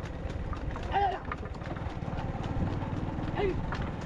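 Hooves of a pair of racing bulls striking the road at a run, with knocks from the wooden race cart they pull. A loud shout comes about a second in and a shorter call near the end.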